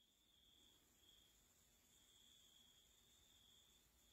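Near silence: faint room tone with a faint, steady high-pitched tone.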